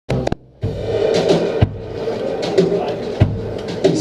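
Live band's instruments sounding in a small room between songs: sustained low notes, with two sharp hits about a second and a half apart, and voices mixed in.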